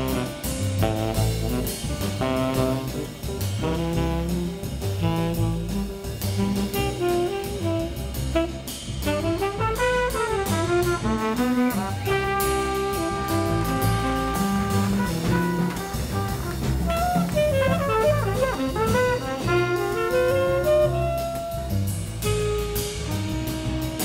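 Live jazz quintet: saxophone and trumpet playing melodic lines over double bass and drum kit with cymbals. The horns move in quick rising and falling runs, with long held notes in the middle.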